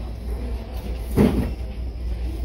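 A single dull thump about a second in, over a steady low background hum.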